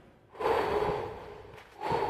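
A person breathing close to a phone microphone: a long breathy exhale that fades away, then another beginning near the end.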